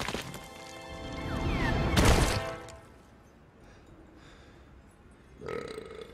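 Film soundtrack from an action scene: music swells to a loud hit about two seconds in, then drops to a quiet bed, with a short, smaller sound near the end.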